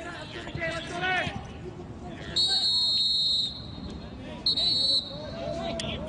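Referee's whistle blown for a foul: one long, shrill blast of about a second, then a shorter second blast.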